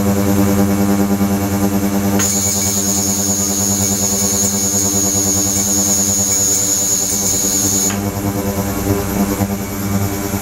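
Ultrasonic tank with 28 kHz and 72 kHz transducers running in water, giving a steady buzzing hum. A high-pitched whine joins about two seconds in and cuts off suddenly about eight seconds in.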